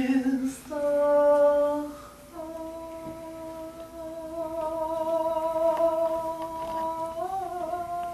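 A solo voice singing wordless, hummed notes without accompaniment: two short notes stepping upward, then one long held note of about six seconds that wavers briefly near the end.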